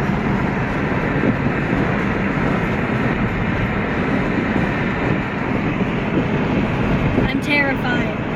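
Steady road and engine noise of a moving Hyundai car, heard from inside the cabin.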